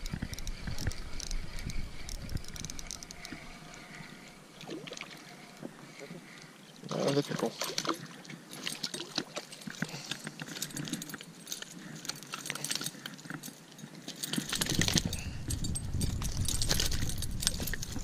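Spinning reel being cranked against a hooked fish, with scattered clicks and rattles from the reel and rod handling.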